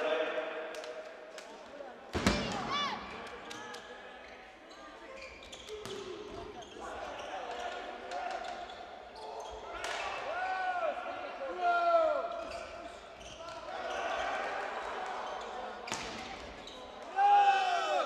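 Volleyball struck hard several times in a large sports hall, the loudest hit about two seconds in, with players' short shouts and crowd noise echoing around it.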